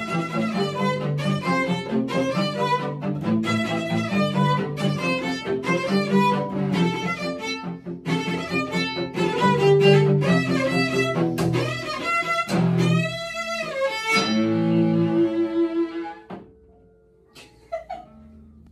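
Two cellos playing a duet, short rhythmic repeated bow strokes under a melody line. Near the end comes a wide wobbling slide in pitch and a few held notes, then the playing stops.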